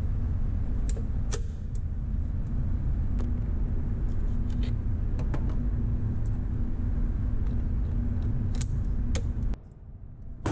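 Steady low rumble and hum of indoor range background noise, with a few faint sharp clicks scattered through it; the rumble cuts off abruptly near the end.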